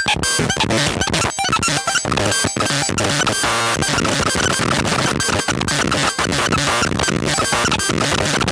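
Eurorack modular synth patch, a Mutable Instruments Sheep wavetable oscillator in a feedback loop with a Mystic Circuits Vert and Switches expander, putting out a loud, dense, chaotic stream of glitchy digital noise. Rapid irregular clicks and stutters run through it.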